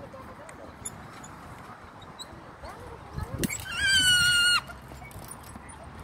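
A young child's high-pitched squeal, one held shriek of about a second starting a little past the halfway point, with a wavering onset.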